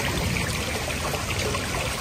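Water steadily trickling and splashing into a garden koi pond, a continuous even rush with no single events.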